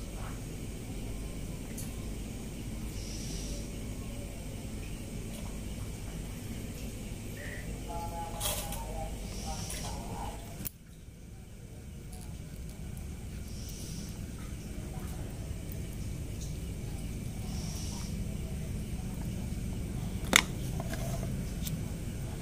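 Steady low background hum with scattered soft clicks and taps, and one sharp click near the end. The sound drops out briefly about halfway.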